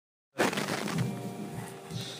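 A sudden knock as the recording starts, then the busy, mixed sound of a band rehearsal room between songs, with a faint held instrument tone coming in about a second in.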